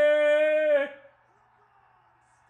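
A loud, long, held yell of excitement on one steady pitch, breaking off with a small drop in pitch about a second in.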